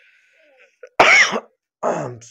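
A man coughs once, sharply, about a second in, then clears his throat with a short voiced sound near the end.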